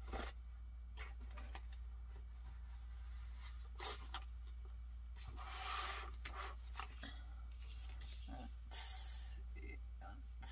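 Paper being handled on a desk: a few short rustles and slides of paper and a booklet, with pen scratching on paper between them.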